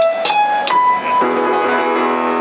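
Yamaha grand piano playing the opening of a song's introduction: a few single notes, then held chords from just after a second in.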